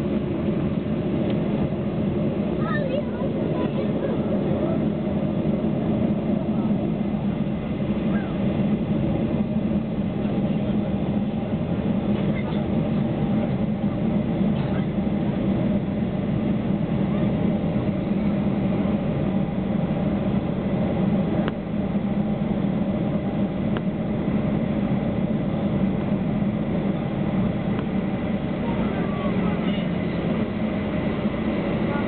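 Steady cabin noise of a Boeing 737-800 taxiing, its CFM56 turbofan engines running at low thrust with a constant low hum, heard from inside the passenger cabin.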